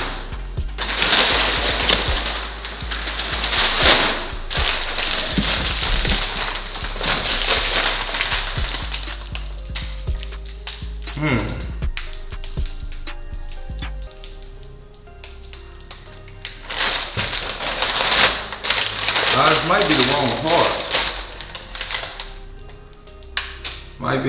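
Crumpled kraft packing paper rustling and crinkling as it is handled in a cardboard box, densest in the first half, over background music with a steady bass and held notes.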